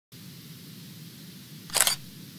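Sound effect of a channel's news intro sting: a faint steady low hum, then near the end a short, loud burst like a camera shutter as the logo appears.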